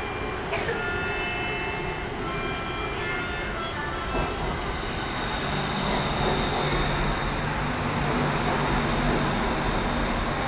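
BTS Skytrain train arriving at the platform: a steady running rumble. Several high steady tones sound over the first few seconds, and a low motor hum builds up in the second half.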